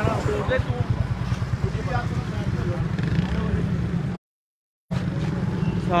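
Low, evenly pulsing rumble of an idling engine under snatches of voice. It cuts out to silence for under a second about four seconds in, then resumes.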